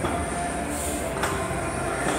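Steady background din of a busy gym, a mechanical rumble with faint held tones, broken by two sharp clicks a little over a second apart.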